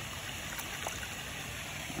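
Water pouring from a small plastic container into a pond as fish are tipped out, a steady trickle with a few faint splashes.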